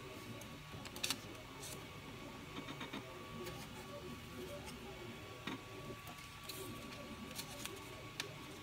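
Faint steady hum from the Ultimaker 3 printer, with scattered small clicks and rustles as a sheet of paper is pushed in and out under the print-head nozzle to check the bed leveling.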